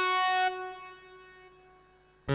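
Roland GR-33 guitar synthesizer preset holding one note, which drops off sharply about half a second in and then fades away to near silence.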